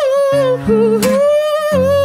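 Man singing a wordless, wavering melody in two long held notes, over strummed acoustic guitar chords, with a fresh strum about a second in.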